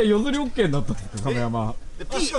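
Men's voices talking without clear words; one voice holds a single low, coo-like note for a moment about a second and a half in.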